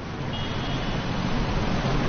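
Road traffic: a steady rush of passing vehicles that swells gradually.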